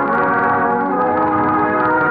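Orchestral music from a 1940s radio drama's score: held chords that sustain steadily through a break in the dialogue.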